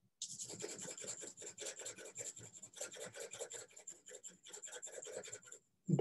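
A drawing tool scratching across paper in rapid back-and-forth shading strokes, about nine a second, stopping shortly before the end.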